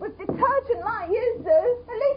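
A person's voice whimpering in short phrases, its pitch wavering up and down.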